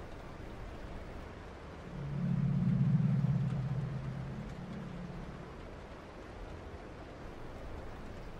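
A low, steady drone swells up about two seconds in and fades away over the next few seconds, over a faint hiss.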